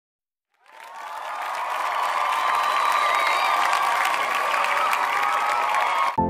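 A crowd applauding and cheering, fading in about half a second in, holding steady, then cutting off abruptly.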